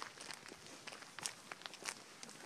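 Footsteps crunching on a dry dirt and gravel trail, about six steps in a row.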